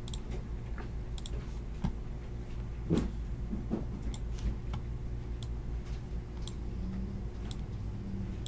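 Scattered, irregular clicks of a computer mouse and keyboard, over a low steady hum.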